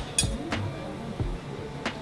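Soft background music with three sharp clinks of cutlery against a dish, the loudest, a bright ringing clink, just after the start.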